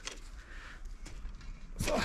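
Quiet outdoor background with a few faint clicks and rustles, ended by a short spoken "So" near the end.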